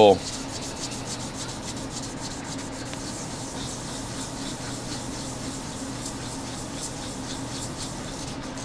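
A 7.3 Power Stroke injector shim, held in its guide, rubbed back and forth by hand on fine wet/dry sandpaper: a steady rasping with repeated strokes. The shim is being lapped thinner by a tiny amount.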